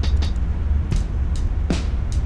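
Electronic drum samples auditioned one by one in a music-production program's sample browser: a handful of short, crisp hi-hat hits, irregularly spaced, over a steady low hum.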